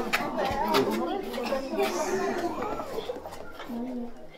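A group of children chattering and laughing together, many voices overlapping.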